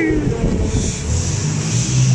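Milling machine running with a steady low hum and a grinding hiss, its cutter working an aluminium motorcycle engine case.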